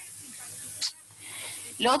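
Steady hiss of the recording's background noise in a pause between sentences, with one short sharp tick a little before halfway. A woman's voice starts talking again near the end.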